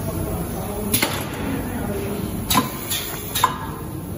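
A flexible foil-duct winding machine running with a steady low hum. Four sharp snaps stand out: one about a second in and three in quick succession between two and a half and three and a half seconds in.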